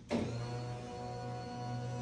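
Electric hospital bed motor running with a steady hum as it lowers the bed.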